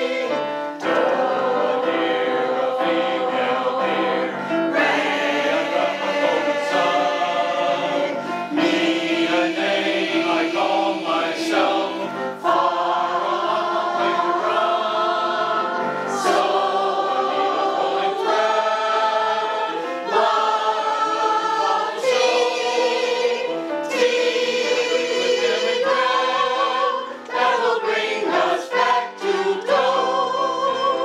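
Mixed adult choir of men and women singing in harmony, accompanied on a digital piano.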